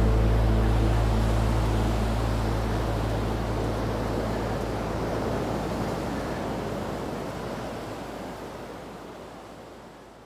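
A steady rushing noise over a deep low rumble, fading slowly and evenly until it is almost gone at the end.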